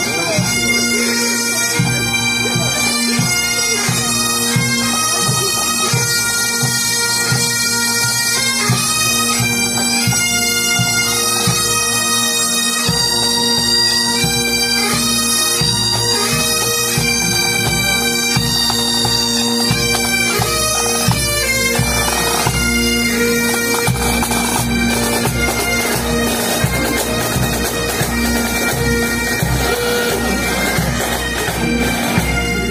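A pipe band playing as it marches past: Highland bagpipes sounding a steady drone under a stepping melody, with snare and bass drums beating time.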